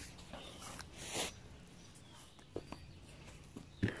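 Tin of polyurethane glue being opened by hand: a short scraping rasp about a second in, then a few light clicks and a sharper knock near the end.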